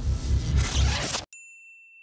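Title-sequence theme music with a heavy bass beat, cutting off suddenly about a second in, followed by a single high, bell-like ding that rings on and slowly fades.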